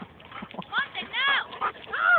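A dog giving a few short, high-pitched calls, each rising and then falling in pitch, the loudest about a second in.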